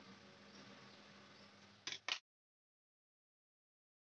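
Near silence: faint room tone, with two short clicks close together about two seconds in, after which the sound drops out completely.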